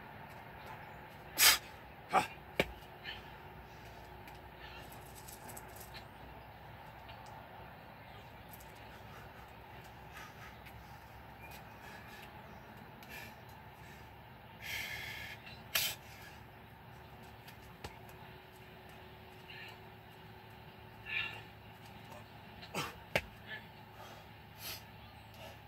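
A few sharp knocks about one and a half to three seconds in, another near the middle and a few more near the end, over a steady low background hum.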